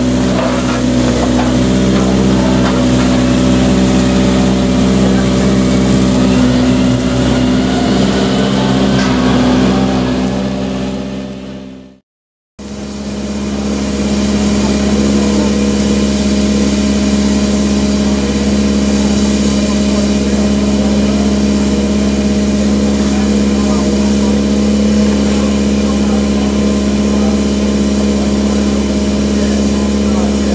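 BR Standard Class 7 steam locomotive standing, with escaping steam hissing over a steady droning hum. The sound drops out completely for about half a second, twelve seconds in, then resumes unchanged.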